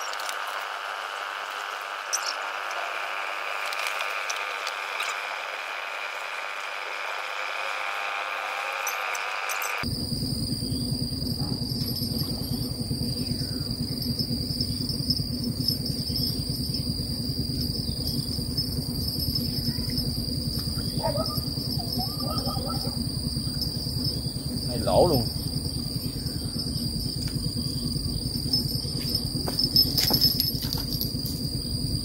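Insects buzzing steadily in high, even tones. About ten seconds in, the sound changes suddenly and a low rumble joins. A brief rising-and-falling call sounds a few seconds before the end.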